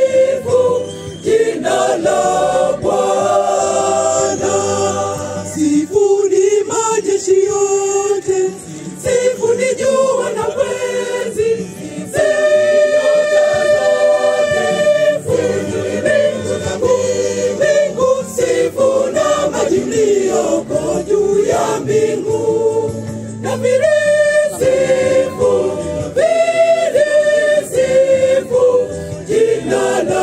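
A mixed church choir of women and men singing a hymn in harmony, with some chords held for several seconds.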